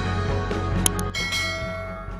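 A bright bell-like chime sound effect rings out just after a second in and slowly fades, over music. A sharp click comes just before it.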